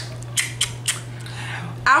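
Three sharp clicks a few tenths of a second apart, then a soft hiss lasting most of a second, over a steady low hum.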